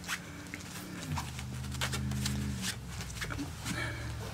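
A corgi puppy nosing and mouthing a plastic glitter ornament ball on a wooden floor, with scattered light clicks and taps of the ball and paws. A low steady hum is heard for about a second and a half in the middle.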